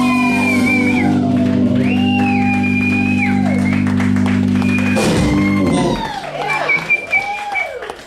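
Live rock band with electric guitars and drums holding a long sustained chord that stops about five and a half seconds in, followed by a few rising-and-falling shouts as the song ends.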